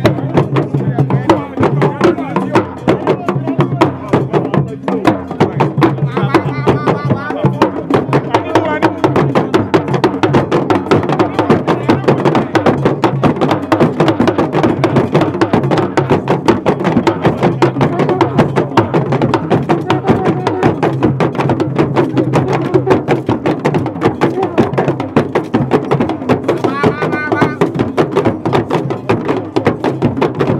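Traditional drumming and percussion playing a fast, dense rhythm, with crowd voices mixed in and a voice calling out briefly twice.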